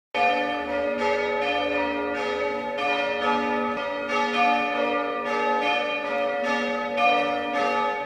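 A peal of church bells ringing, struck about twice a second, each stroke ringing on under the next.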